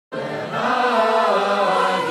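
Several voices singing a slow chant in harmony with long held notes, starting abruptly at the very beginning.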